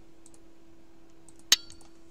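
A single sharp, hard click with a brief ringing tail about one and a half seconds in, among a few faint ticks, over a steady low electrical hum.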